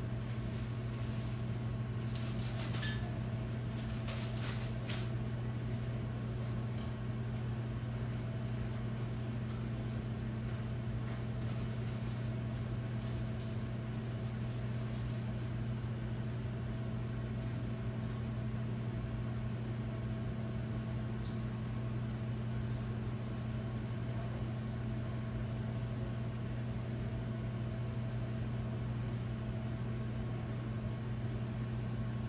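A steady low electrical hum from a running kitchen appliance, with a few brief clinks and clatters of kitchenware about two to five seconds in.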